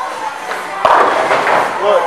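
Bowling ball hitting the pins: a sudden clatter of pins about a second in that dies away over about a second, echoing in the large bowling hall.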